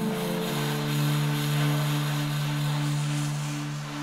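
Closing bars of a saxophone and Portuguese guitar duet: the guitar's last chord dies away in the first moment while the saxophone holds one long low note with a slight waver, slowly fading.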